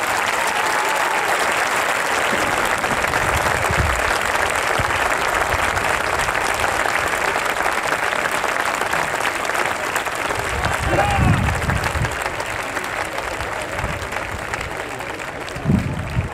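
Large crowd applauding steadily, the clapping slowly dying down over the last few seconds.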